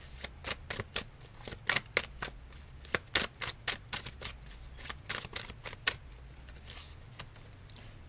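Tarot deck being shuffled by hand, the cards clicking and snapping against each other several times a second, thinning to a few faint clicks near the end.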